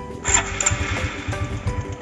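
Honda Supra X125's single-cylinder four-stroke engine starts about a quarter second in and runs at a steady idle, heard under background music.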